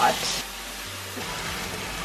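Chopped kimchi sizzling steadily in a hot nonstick frying pan.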